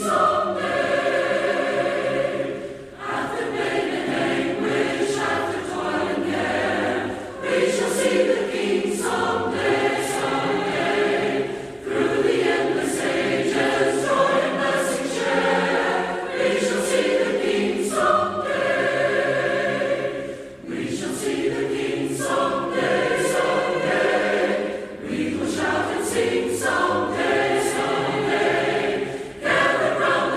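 A congregation singing an invitation hymn together, line after line, with short breaks between the lines.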